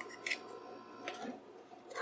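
Faint clicks and rustles of small plastic and card packaging handled and opened by hand to get at a single eyeshadow pan, a few separate ticks over quiet room noise.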